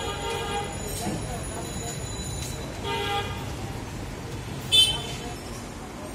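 Brief indistinct voices over a steady low hum of background traffic noise; about five seconds in, one short, loud, high-pitched horn toot.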